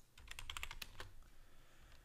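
Computer keyboard keys clicking in a quick run of typing, about ten keystrokes in the first second, then a few more scattered ones.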